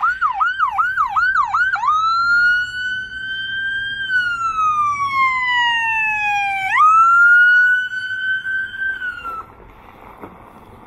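Electronic siren on a Ford F-350 brush truck, first in a fast yelp of about three quick rising-and-falling sweeps a second, then switching to a slow wail that rises, falls and rises again before cutting off near the end.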